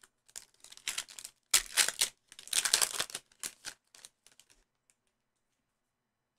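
A foil trading-card pack wrapper being ripped open, with a run of crinkling and tearing bursts that die away after about four and a half seconds.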